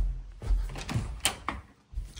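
A house front door being opened: a low thump at the start, a second one about half a second in, then a few sharp clicks from the latch and handle.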